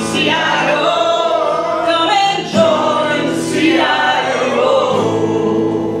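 A woman singing a folk song to acoustic guitar accompaniment, in long sustained sung lines.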